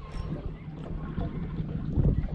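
A boat sitting on the water: a low, steady hum with wind and water noise.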